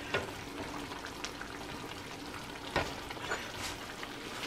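Thick mustard fish curry sizzling in a nonstick pan as a wooden spatula stirs through it. A few short knocks come from the spatula against the pan, near the start and twice near the end.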